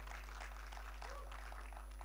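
A pause in speech: faint room tone with a steady low electrical mains hum through the microphone and PA system.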